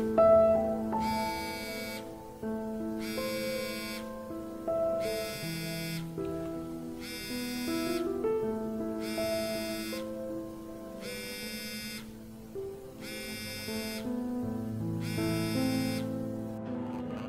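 Mobile phone ringing with a buzzing ring tone of about a second, repeating about every two seconds, over a slow melodic tune.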